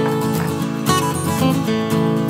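Background music: strummed acoustic guitar, with a new chord or note about every half second.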